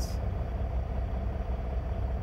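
Steady low rumble of an idling semi-truck engine, heard from inside the sleeper cab.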